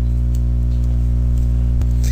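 Steady electrical hum with a ladder of evenly spaced overtones, the mains hum of the recording setup, with a faint click near the end.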